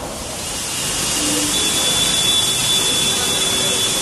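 Rainwater pouring down in a heavy sheet, a loud steady rushing hiss that swells about a second in and then holds, with a faint high whistle-like tone in the second half.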